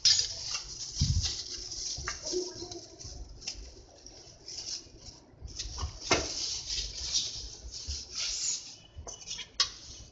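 Thin plastic bag crinkling and rustling as it is pulled off a baked cake, with scattered clicks and a low knock about a second in.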